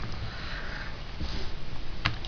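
A person breathing close to the microphone, a soft airy breath, over a steady low hum and hiss.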